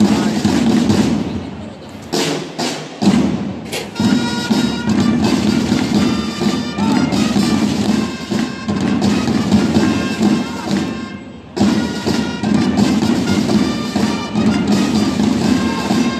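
A drum and trumpet band playing continuously, with dense drumming underneath and long held trumpet notes from about four seconds in. A few sharp knocks come between about two and four seconds in, and the music dips briefly just before twelve seconds.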